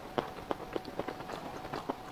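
Close-miked mouth sounds of eating: a run of sharp, wet clicks and small crunches, about seven over two seconds, the loudest near the start.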